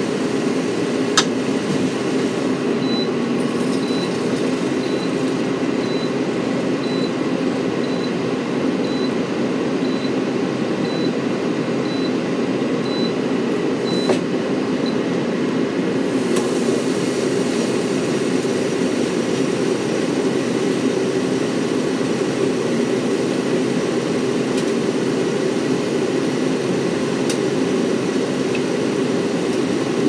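Steady, even rushing noise that does not change. A faint high beep sounds about once a second for some twelve seconds near the start.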